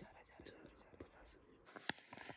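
Near silence with faint whispering and a few soft clicks.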